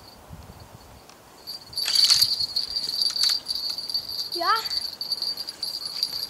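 Small bite bell on a fishing rod jingling steadily as a hooked fish pulls on the line, with a louder burst of ringing about two seconds in.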